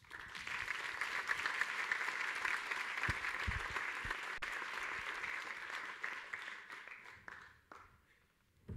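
Audience applauding: steady, dense clapping that dies away near the end.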